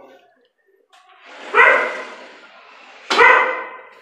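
A dog barking twice, about a second and a half apart.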